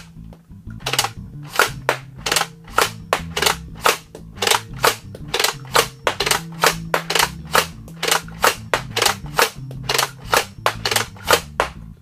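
Buzz Bee Air Warriors Ultra-Tek Sidewinder, a pump-action slam-fire foam dart blaster, shooting suction-cup darts one after another in a steady string of sharp shots, about three a second, starting about a second in. Each pull of the priming handle fires a dart.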